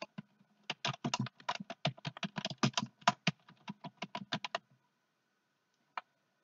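Typing on a computer keyboard: a quick, uneven run of keystrokes lasting about four seconds, then stopping.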